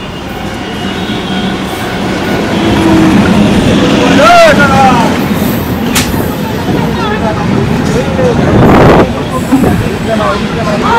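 Electric suburban passenger train rolling along the platform, its rumble growing louder over the first few seconds and staying loud as the carriages pass close by. Voices call out over it about four seconds in and again near the end.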